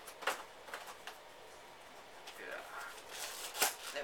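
Hands rummaging through packaging in a cardboard box: a few light clicks and knocks, then a burst of rustling about three seconds in that ends in a sharp click.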